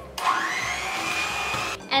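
Electric hand mixer running with its beaters in a bowl of cake batter as flour is beaten in. Its motor whine rises in pitch as it comes up to speed, holds steady, and is switched off after about a second and a half.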